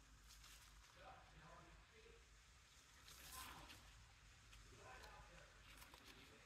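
Near silence with faint, distant television voices in the background. A soft rustle about three seconds in.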